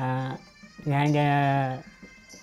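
A man's voice: a short voiced sound at the start, then one drawn-out tone held at a steady pitch for about a second.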